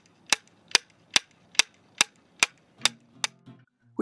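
Two wooden blocks clapped together in a steady rhythm, about two and a half sharp claps a second, each clap timed to land on the echo coming back off a distant building. The claps stop a little after three seconds in, with a faint low hum under the last few.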